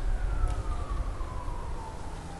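A faint distant siren, its single tone falling slowly in pitch, over a steady low rumble.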